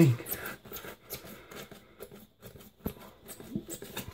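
Utility knife blade drawn through a thick rubber gym slab mat along an aluminium straightedge, making faint, irregular scratchy strokes with a few sharp ticks. The mat is bent over wood blocks so the cut opens as the blade goes.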